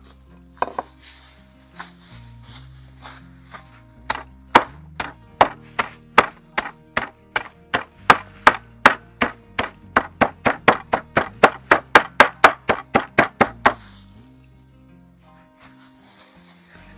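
Hammer striking walnuts in a doubled plastic bag on a wooden cutting board, crushing them: a steady run of sharp knocks about three a second, starting about four seconds in and stopping about two seconds before the end. Softer plastic-bag handling comes before and after the knocks.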